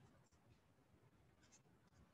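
Near silence: room tone with a few faint ticks of a stylus on a tablet screen as writing is added.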